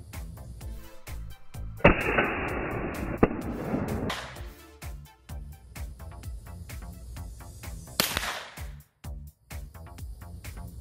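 Rifle shots over background music with a steady beat. A loud shot about two seconds in trails off in a dull rumble for about two seconds, with a sharp crack inside it. Another shot about eight seconds in is sharper and dies away quickly.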